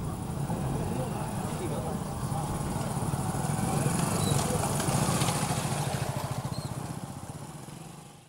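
Small single-cylinder commuter motorcycle engines running as several bikes ride slowly past, with voices over them. The engine sound swells about halfway through, then fades out near the end.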